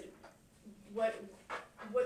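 Speech: a few short, quiet spoken sounds in a small room.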